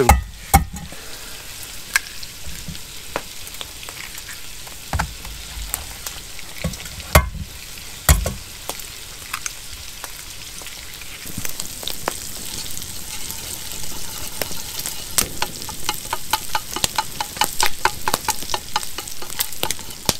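Food frying and sizzling in a pan on a campfire grate, with scattered sharp pops and a few heavier knocks in the first half. A spoon stirs in a mug, and over the last few seconds it ticks rapidly against the side.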